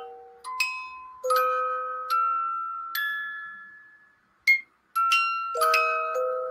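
Swiss music-box movement in a vintage rotating cake plate playing its tune as the plate turns: bell-like plucked notes, one or two at a time, each ringing out and fading, with a brief pause just past the middle.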